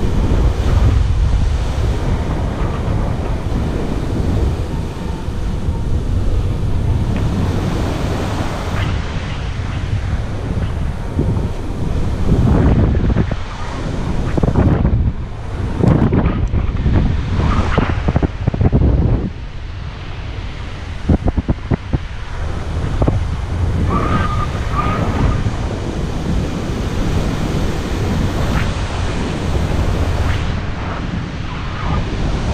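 Airflow buffeting the action camera's microphone during paraglider flight: loud wind noise that swells and drops in gusts, with a few short clicks a little past two-thirds of the way through.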